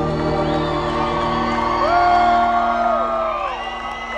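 Live country band holding a sustained chord while audience members whoop and cheer, with one long whoop about two seconds in.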